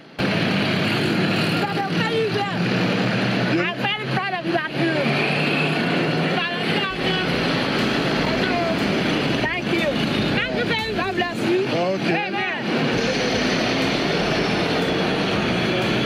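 Steady street noise from traffic and running engines, with people's untranscribed voices breaking in over it several times.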